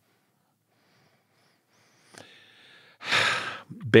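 About two seconds of silence, then a faint click and low noise, and near the end a short, audible breath by a man just before he speaks.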